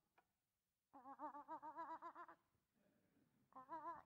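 A single person's voice imitating a hen clucking: a run of quick, wavering clucks lasting about a second and a half, then a shorter run near the end.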